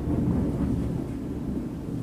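Thunder rumbling low and slowly fading.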